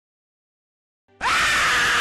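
Out of dead silence, about a second in, a sudden loud, distorted scream starts and holds at full level. It is the jump-scare shriek of the German K-fee commercial.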